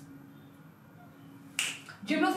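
Quiet room tone with a faint steady hum, then, about a second and a half in, a single short, sharp finger snap.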